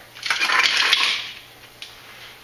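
A short rattling clatter, like a rapid run of small clicks, starting just after the beginning and lasting about a second.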